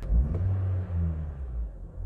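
Honda Civic four-cylinder engine revved briefly from idle by a press on the accelerator pedal, rising and falling back toward a steady idle. This throttle blip is what makes the wideband air-fuel ratio sensor swing rich, then lean.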